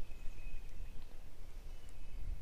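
Low rumble of wind and handling noise with a faint thin whine, as a baitcasting reel is cranked to bring in a small hooked bass.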